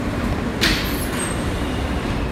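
Steady low rumble inside a moving R160 subway car as it runs along the track, with a brief sharp burst of noise about half a second in.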